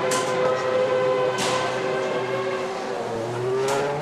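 Formula One car engine running steadily in the pit garage, its pitch rising near the end, with a couple of sharp bangs on top.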